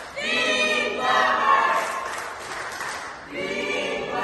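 A group of voices singing together in chorus, with held, gliding notes and a brief break about three seconds in.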